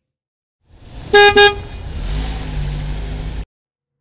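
Car horn giving two short toots about a second in, over the steady rumble of vehicle noise that stops abruptly.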